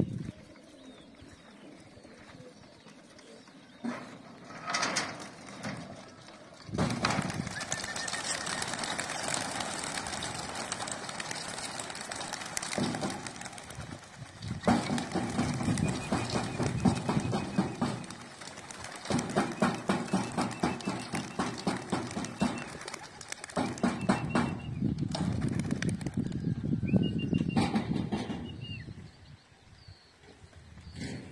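A flock of young racing pigeons taking off from their loft and flying round: a clatter of many wings flapping, coming in several long bursts with short lulls.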